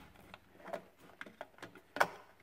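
A few faint clicks and taps as plastic wire-harness connectors are pressed back onto a refrigerator's main power control board.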